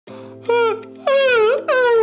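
A man wailing and moaning in mock distress: three wails, the last one sliding slowly down in pitch.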